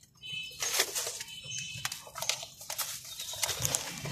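Irregular rustling and crackling of woven plastic feed sacks and tarp as rabbits move among them, with faint high bird chirps behind.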